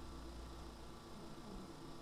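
Steady low hum with a few even tones underneath, from the liposuction suction equipment running while the cannula is worked in the flank.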